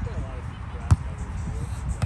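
A single sharp smack of a volleyball being hit by a nearby player about a second in, the loudest sound here.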